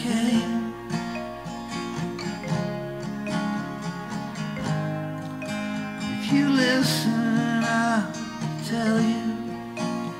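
Acoustic guitar strummed in a steady rhythm in a short instrumental passage of a singer-songwriter song, with sliding melodic notes about six to seven seconds in.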